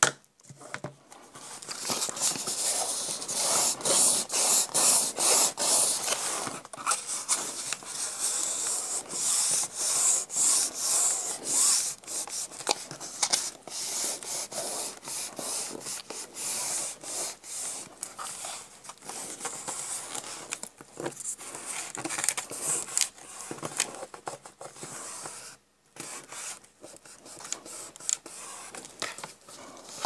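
Hands rubbing and smoothing glued-down paper flat on a ring binder's cover: a continuous dry rubbing made of many quick strokes, stopping briefly near the end.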